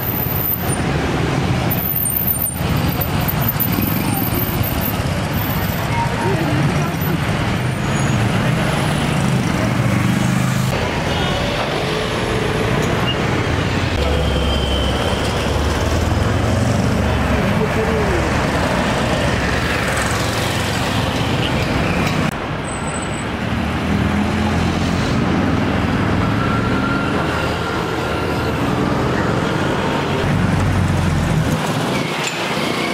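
Busy street traffic: a steady noise of passing vehicles and running engines, with voices of people nearby mixed in.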